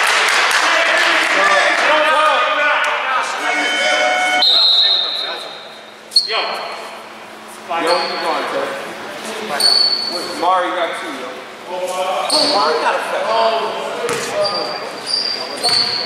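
Indistinct voices echoing in a gymnasium during a basketball game, with short high squeaks of sneakers on the court and basketball bounces; one sharp bounce stands out about six seconds in.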